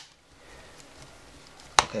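A plastic frame clip on an LCD panel's backlight assembly snapping into its lock: a single sharp click near the end, after more than a second of quiet handling.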